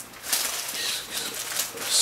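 Plastic packaging rustling and crinkling as a plastic-wrapped folded bag is handled and lifted out of a box.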